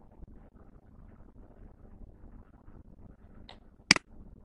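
Two computer mouse clicks near the end, a faint one followed about half a second later by a louder one, as pen-tool anchor points are placed. Faint steady room noise throughout.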